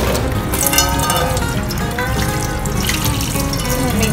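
Tap water running onto a frying pan in a stainless steel sink as it is rinsed, heard under steady background music.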